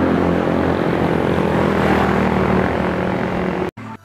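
A steady engine drone with a heavy rush of noise over it, cutting off abruptly near the end.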